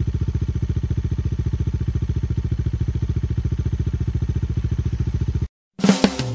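Motorcycle engine idling, a steady, even, rapid low pulse of about thirteen beats a second that cuts off abruptly near the end.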